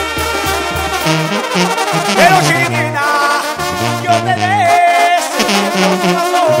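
Mexican banda playing live, with brass leading and no singing heard. The tuba's evenly pulsing bass notes turn into a moving bass line about a second in.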